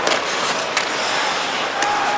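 Ice hockey play heard from arena level: skates scraping the ice and a few sharp clacks of stick and puck, over steady crowd noise.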